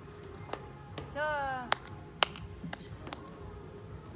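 A brief high-pitched cry about a second in, then two sharp clicks about half a second apart.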